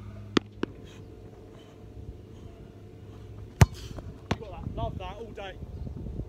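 A football kicked hard: one loud, sharp thud about three and a half seconds in, followed by a softer second impact less than a second later.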